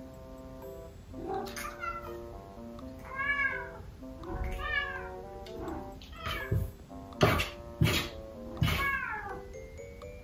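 A kitten and a resident cat meowing to each other through a closed door, about six short meows with the loudest near the end, over soft background music.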